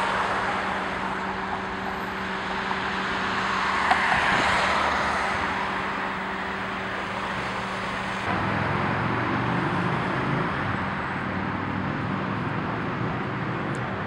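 Road traffic on a city bridge: cars and a van driving past, with a swell as one goes by about four seconds in. A steady low hum runs under it for the first half and gives way to a rougher low rumble after about eight seconds.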